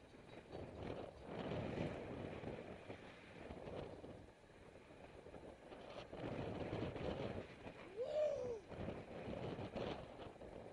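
Wind buffeting the microphone of a camera on a moving road bike, with road noise, swelling and fading unevenly. Just after eight seconds in, a short tone rises and falls.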